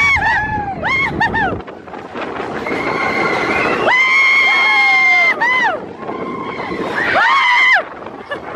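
Roller-coaster riders screaming on a mine-train coaster: long, high, held screams that fall away at the end, the longest about four seconds in and shorter ones around it. A low rumble from the moving train sits under the first second and a half.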